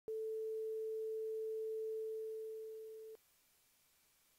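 Electronic sine test tone: one steady, mid-pitched pure tone held about three seconds, fading over its last second and then cutting off.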